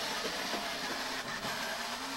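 Battery-powered ride-on toy motorcycle running on its faster speed setting: a steady whir from the electric motor and gearbox, with plastic wheels rolling over dry grass.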